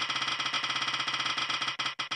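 Spin-the-wheel app's ticking sound effect as the colour wheel spins: rapid clicks, about ten a second, that begin to space out near the end as the wheel slows down.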